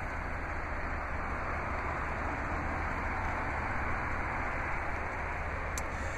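Steady low rumble and hiss of background noise, with a faint click near the end.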